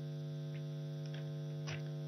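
Steady electrical mains hum in the microphone and sound-system feed, a low buzz with many evenly spaced overtones, in a gap between spoken sentences. A few faint soft ticks sound within it.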